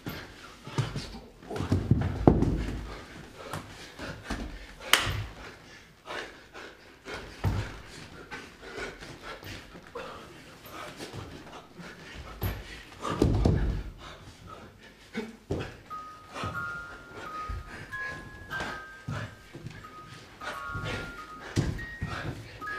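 Several heavy thuds of a body dropping and rolling on a stage floor, with a sharp crack about five seconds in. From about sixteen seconds a slow tune of short, high single notes begins.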